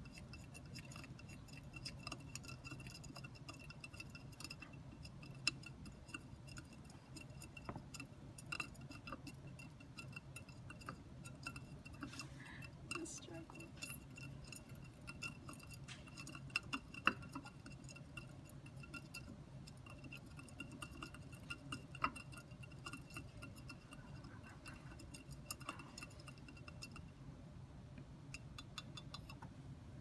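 A coffee stirrer stirring salt into water in a small jar, its faint irregular clicks and taps against the jar's sides as the salt dissolves.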